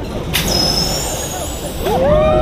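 A sudden hiss of air with a high whistle in it, starting about a third of a second in over a steady low rumble: the drop tower ride's pneumatic system releasing air as the ride sets off. A rider begins to scream at the very end.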